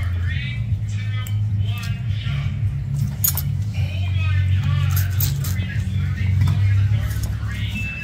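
Background voices and music over a steady low hum, with a few sharp clicks.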